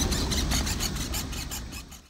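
Outdoor background noise: a low rumble with faint, rapid ticking, fading out near the end.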